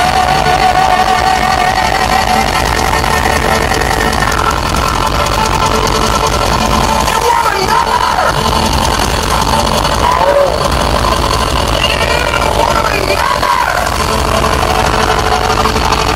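Live band playing loud, amplified music through a stage PA, with electric guitar, steady throughout.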